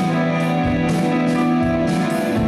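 Live rock band playing: electric guitars holding sustained chords over bass, keyboard and drums, with low drum hits about a second apart.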